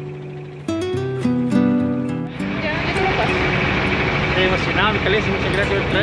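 Gentle acoustic guitar music that cuts off about two seconds in, giving way to the loud steady noise of a small motorboat under way on open water.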